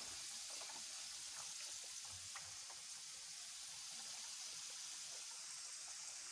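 Sweet potato fries deep-frying in a pan of hot oil: a steady sizzle with scattered small crackles. The fries are nearly done.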